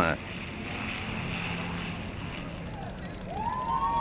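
Jet aircraft of an RAF formation flyover passing overhead, heard as a steady rushing roar. Near the end, whistling tones rise and fall over it.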